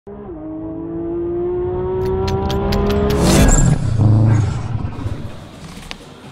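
Car engine accelerating, its pitch climbing steadily for about three seconds with a few sharp crackles near the top. A loud burst follows, then a low rumble that fades.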